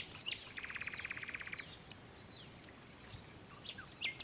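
Wild birds calling: short high chirps and downward-sweeping whistles, with a fast trill lasting about a second near the start, then a quieter stretch in the middle before the chirps pick up again.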